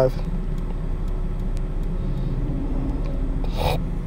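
A steady low background hum with no clear source, and a short breathy burst of noise about three and a half seconds in.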